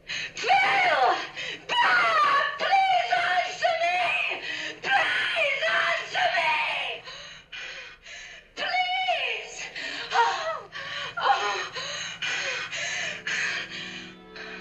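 A person screaming and wailing in long, high-pitched cries that swoop up and down, with no clear words, broken by short pauses. Music comes in with steady sustained notes near the end.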